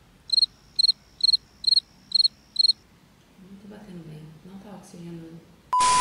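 Cricket chirping: six short, high chirps, evenly spaced about twice a second, then stopping. A short, loud beep with a burst of hiss comes at the very end.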